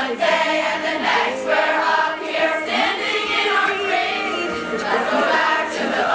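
A large choir of girls and young women singing together.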